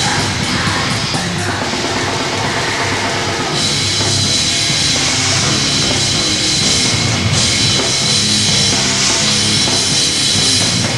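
A live rock band plays loud, with distorted electric guitars through Marshall stacks, bass and a drum kit. Cymbals come in strongly about three and a half seconds in.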